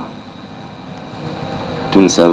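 Steady rushing background noise with no clear rhythm, slowly growing louder.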